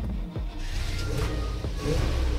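1968 Dodge D100 pickup's carbureted engine started on the key: it turns over and catches, running with a steady low rumble from about half a second in.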